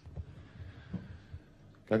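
A man's faint breathing and a few short, low murmurs, with his speech starting at the very end.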